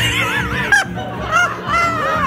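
Music playing with several high, wavering vocal cries over it, shrill enough to sound like honking.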